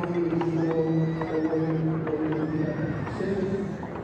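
Welsh Cob stallion whinnying, with a few hoof knocks on the ground.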